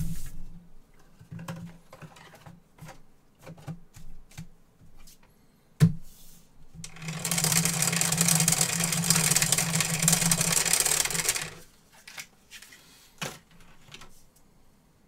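A motorised dice shaker rattling two dice around under its clear plastic dome for about four and a half seconds, starting about seven seconds in, with a steady motor hum beneath the rattle. Before it come light handling clicks and one sharp knock.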